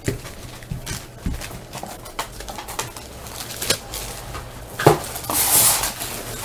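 Trading cards being handled and set down on a desk: scattered light taps and clicks, a sharper tap just before the fifth second, then a short rustling, sliding sound.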